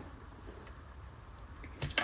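Faint handling sounds: a few light clicks and rustles as a hand mirror and lipstick are picked up, with a couple of slightly sharper clicks near the end.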